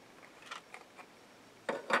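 Small plastic refill-holder parts being handled and popped open: a few faint clicks, then a louder double click near the end.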